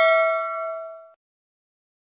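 Bell-like ding sound effect ringing and fading, dying away about a second in.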